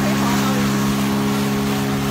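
Outboard motor of a small inflatable speedboat running at speed, a steady drone that holds one pitch.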